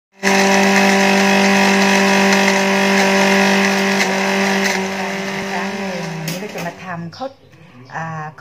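Philips 600 W blender motor running steadily, grinding a coarse paste in its small jar. About six seconds in it slows with a falling pitch and stops, followed by a couple of clicks.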